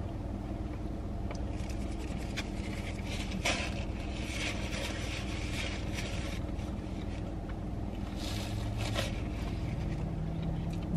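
Car idling, heard from inside the cabin as a steady low hum, with scattered rustles and scrapes from handling a cardboard donut box and the chewing of people eating donuts.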